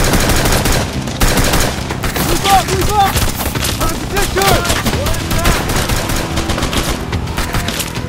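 A firefight: rapid automatic gunfire from several guns, the shots dense and overlapping without a break.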